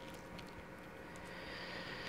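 Faint handling sounds of fingers working thread around a large metal paper clip, with a few light ticks just after the start.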